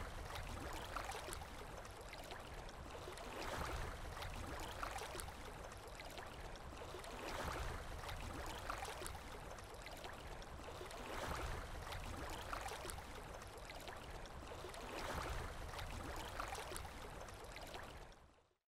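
Faint rushing water, swelling and ebbing about every four seconds, like small waves washing in.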